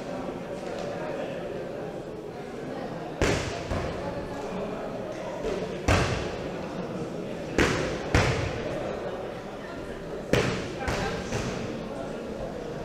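Five loud, sharp thuds at uneven intervals, each echoing briefly in a large hall, over a steady murmur of crowd chatter.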